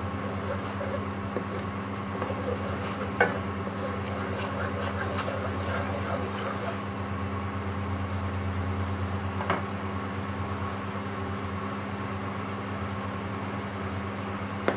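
Red curry paste bubbling and sizzling in boiling milk in a nonstick wok while a wooden spatula stirs it. The spatula knocks against the pan twice, over a steady low electrical hum from the hob.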